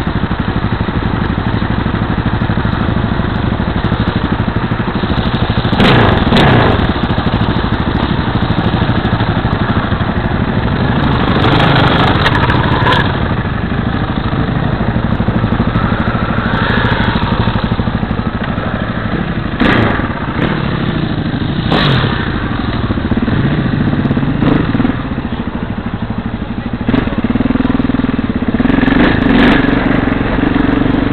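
Single-cylinder KTM LC4 660 supermoto engine idling close to the microphone, a steady rough running note, with a few sharp knocks and clatters along the way. Near the end a second motorcycle engine comes in as another bike rides up.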